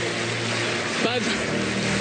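Studio audience applauding and cheering, a steady wash of noise with a low steady hum beneath.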